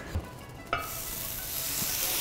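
Sauce poured from a pot onto a hot iron sizzling platter. The food bursts into a sizzle about three-quarters of a second in and keeps sizzling steadily.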